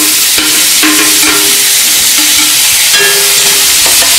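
Vegetables sizzling in a hot metal kadhai as shredded cabbage is tipped in and stirred with a metal slotted spatula, a steady frying hiss with a few light scrapes.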